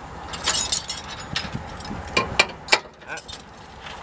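Steel trailer safety chains clinking and jangling as they are handled and hooked onto a truck's hitch, a few sharp metallic clinks spread through the moment.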